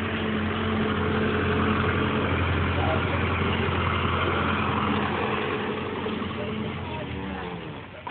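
Tractor engine drone as a tractor pulling a trailer drives past, steady and loud, then dropping in pitch and fading near the end.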